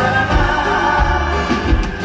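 Live band playing a dance medley, with voices singing together over steady bass notes.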